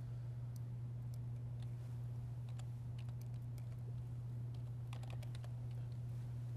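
Faint, irregular computer-keyboard typing clicks over a steady low electrical hum picked up by a live microphone, with a short flurry of keystrokes about five seconds in.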